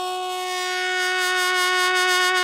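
A single long note held on a wind instrument in the show's music, steady in pitch and growing a little louder.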